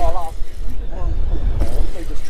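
A few short bursts of voices over a steady, loud low rumble, typical of wind and choppy water on a small open boat.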